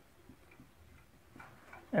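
Faint ticks and scratches of a felt-tip marker on a whiteboard as letters are written, with a slightly louder scratchy stroke about one and a half seconds in.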